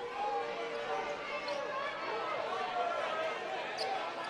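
Basketball game court sound: sneakers squeaking on the hardwood and a ball bouncing, with voices in the arena.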